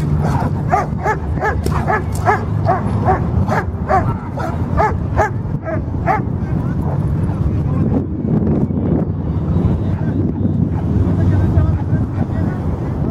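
A dog barking in a rapid run of short, high barks, about two or three a second, that stops about halfway through. Voices and a low rumble of an outdoor crowd continue underneath.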